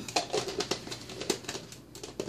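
Irregular light clicks and taps, about ten in two seconds, of kitchen items being handled on a counter.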